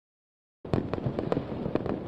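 Dead silence for about half a second at an edit cut, then a quick, irregular string of sharp pops from firecrackers going off, several per second.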